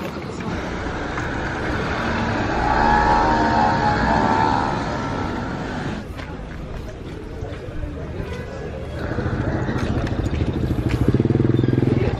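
Street traffic with people's voices in the background. A motor scooter passes a couple of seconds in, and a vehicle engine runs near the end.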